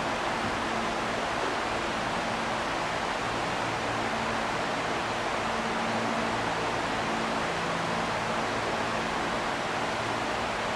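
Steady hiss of a large gymnasium's room noise with a faint low hum, as from ventilation fans; nothing else stands out.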